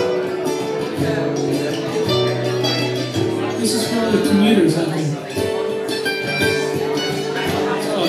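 Two guitars playing an instrumental passage together: a strummed acoustic guitar with a second guitar playing along, the notes changing every second or so.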